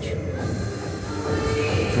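A 90s dance megamix playing quite loud from a Sony SRS-XB43 Bluetooth speaker at full volume, with the bass boosted to maximum. It is heard from the far end of a large, empty hall, where it echoes strongly.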